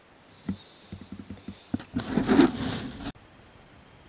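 Handling noise: scattered light clicks and knocks, then a louder rustling scrape that cuts off abruptly about three seconds in.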